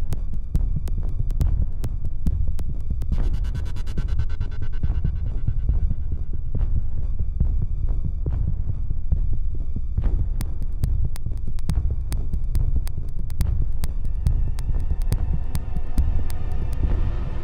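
Background film score: a deep throbbing bass drone with ticking percussion, and a sustained tone that swells a few seconds in and then fades.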